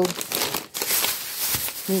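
Plastic bags crinkling and rustling as a frozen-food bag is handled among thin plastic grocery bags, with a short break about two-thirds of a second in.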